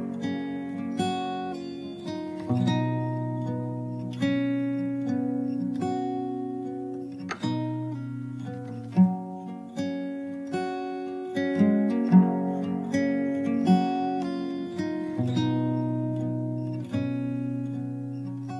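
Background music: a guitar playing plucked notes and chords, with no singing.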